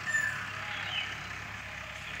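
Outdoor background ambience: a steady hiss with a couple of short, faint chirps, one at the start and one about a second in.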